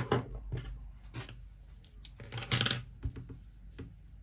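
Wooden coloured pencils being handled while colouring: a series of light clicks and scratches, with a brief louder scratchy rattle about two and a half seconds in.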